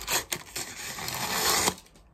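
Release backing peeled off the adhesive sealing strip of a small cardboard mailing box: a dry, tearing rasp lasting about a second and a half that stops shortly before the end, after a few light cardboard clicks.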